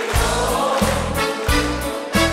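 Live pop band playing: bass and drums come in right at the start, with a deep bass note about every two thirds of a second under keyboards and electric guitars.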